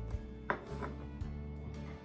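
A few light taps of a plastic baby spoon against a plastic high-chair tray, the clearest about half a second in, over soft background music.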